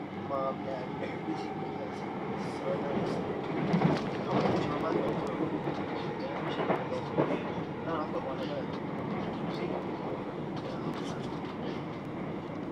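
Onboard sound of a c2c Class 357 Electrostar electric multiple unit running at speed: a steady rumble of wheels on rails. It grows louder around four seconds in as another train passes close alongside.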